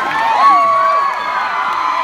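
Concert crowd cheering and screaming, many high voices overlapping in long held shrieks, swelling loudest about half a second in.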